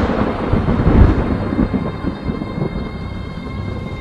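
Thunder sound effect from a film trailer: a deep rolling rumble, loudest about a second in and fading through the rest, over a soft music bed.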